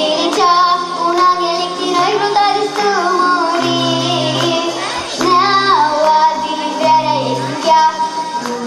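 A young girl singing an Aromanian folk song into a microphone over steady instrumental accompaniment, her voice gliding between held notes.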